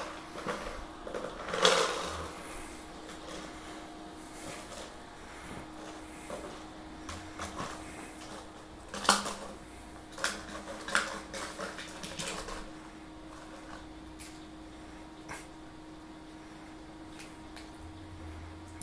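A small dog nosing and pawing an empty plastic water bottle filled with treats, the bottle knocking and crinkling against the floor and a dog bed in scattered clicks, loudest about two, nine and eleven seconds in, as she works the treats out of it.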